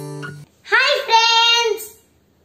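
The last strummed acoustic guitar chord of an intro tune rings and is cut off about half a second in. Then a boy's high voice calls out two long, held syllables.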